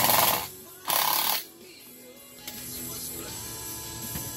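Cordless power drill driving a screw into a deck board in two short bursts about a second apart, over background music.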